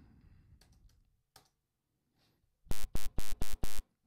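A few computer keyboard clicks, then five short, loud, buzzy notes in quick succession from an Xfer Serum software synth playing a wavetable generated from the typed word "pigeon"; it sounds nothing like the word.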